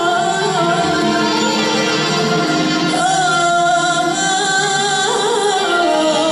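A woman singing a long, ornamented Arabic melody with wavering held notes, accompanied by an Arabic music ensemble with oud and bowed strings.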